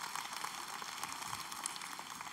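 Light audience applause, a steady patter of many hands that continues through the pause in the talk.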